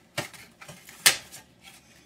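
Hard metal and plastic parts of a flat screen monitor clicking and clinking as it is taken apart: a few sharp clicks, the loudest about a second in.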